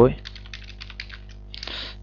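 Computer keyboard typing: a quick run of keystrokes, then a short hiss near the end, over a low steady hum.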